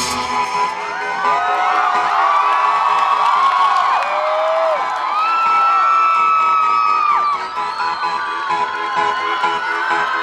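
Concert crowd cheering, with many high whoops and screams, right after the band's song cuts off at the very start. A steady held note from the stage rings on under the cheers.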